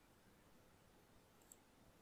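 Near silence: faint room tone, with one faint click about one and a half seconds in.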